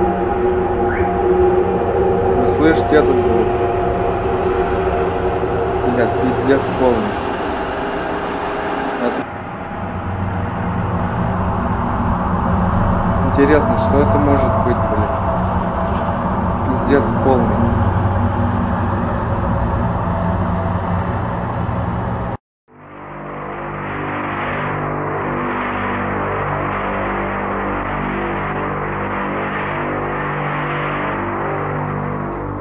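A steady, droning mix of several held low tones, the so-called 'trumpet sound' from the sky in amateur recordings, with a few brief rising-and-falling wails over it. It breaks off sharply about two-thirds through, and after a moment's drop-out a second recording of the same kind of steady, slightly wavering drone follows.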